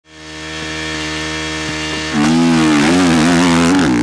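GasGas motocross bike engine running steadily. About two seconds in it is revved up and held high with a wavering pitch, then drops back near the end.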